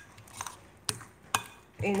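A utensil stirring thick, wet fritter batter in a glass mixing bowl, with three sharp clicks about half a second apart as it knocks against the glass.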